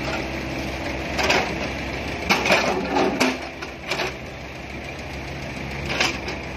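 Mini excavator's diesel engine running steadily while the machine slews and moves its boom, with a handful of sharp metallic clanks from the moving arm and bucket.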